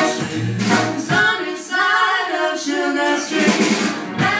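A woman singing with a live jazz band, with bass notes and cymbal strokes under the voice.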